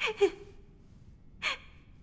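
A young woman's short, breathy gasps, each falling in pitch: two quick ones at the start and another about a second and a half in.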